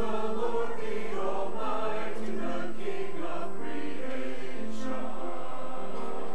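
Church choir of mostly women's voices singing together, holding long sustained notes.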